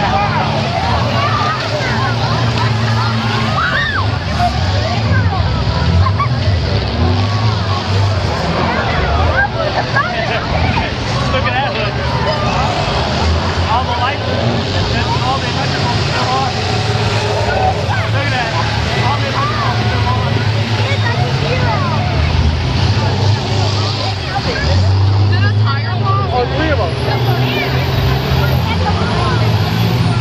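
Several school bus engines running and revving in a demolition derby, under crowd voices talking and shouting throughout.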